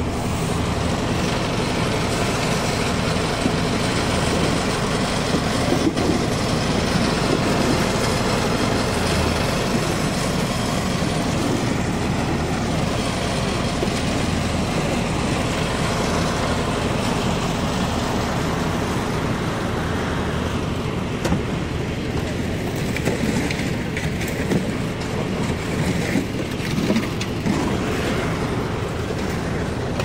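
Engine of a concrete mixer with a lift hoist running steadily, a loud continuous mechanical noise with a low hum under it.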